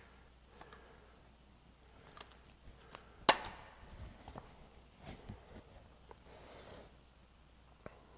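Handling noise from a dual-cartridge caulking-style dispensing gun in a quiet room: one sharp click about three seconds in, with a few fainter ticks and knocks around it.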